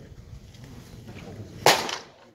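A pitched baseball smacking into a catcher's mitt: one sharp, loud pop about a second and a half in.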